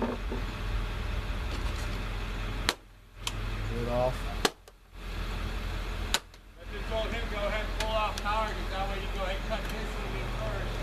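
A steady low rumble like a vehicle engine running nearby, broken three times by short gaps where the recording cuts, each with a click. Faint wavering voice-like sounds come a little after the middle and again near the end.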